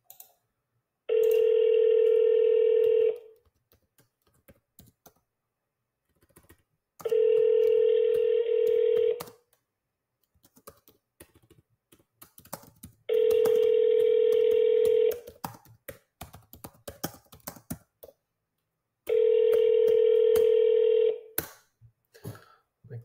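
Outgoing-call ringback tone heard through a smartphone's speaker: four rings, each about two seconds long with about four seconds between them, the call ringing unanswered. Faint small clicks fall between the rings.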